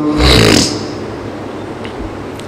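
A man drawing a sharp breath into a close microphone through a PA system in the pause between chanted phrases. It is followed by a steady background hum and hiss from the sound system and room.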